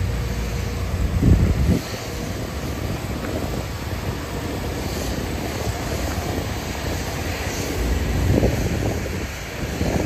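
A steady engine drone with street noise. It is heavier at the start and swells again near the end.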